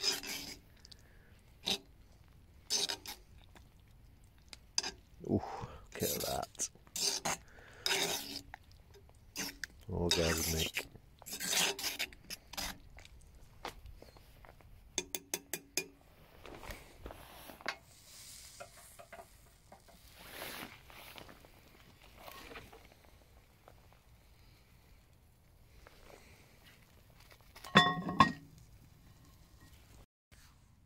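Utensils stirring and scraping in a cast-iron pot of stew, with scattered knocks and clinks of metal on the pot and its wire handle. There is one louder clank near the end.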